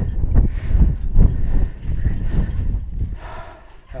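Wind buffeting the microphone of a head-mounted camera, an irregular gusty rumble that dies down near the end.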